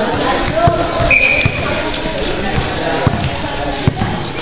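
Basketball bouncing on a court floor in play, irregular low thumps under the crowd's voices, with a short high-pitched tone about a second in.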